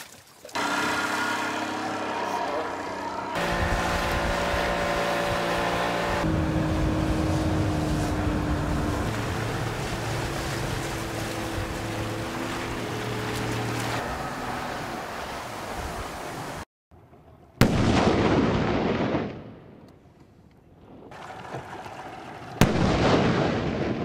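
Outboard motor of an inflatable assault boat running, its pitch stepping to new levels a few times. After a sudden cut come two explosions about five seconds apart, each a sharp crack trailing off over a second or two.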